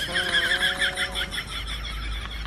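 A horse whinnying, a quavering call that is strong for about a second and a half and then fades. It serves as a comic sound effect.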